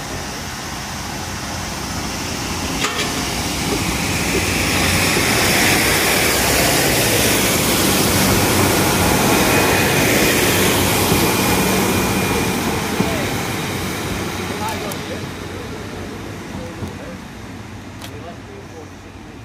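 A vehicle passing by: a broad, noisy rumble that builds over a few seconds, is loudest through the middle and fades away near the end.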